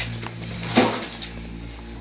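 A single short clunk of metal parts being handled on an old carbon-arc film projector, about a second in, over a steady low hum.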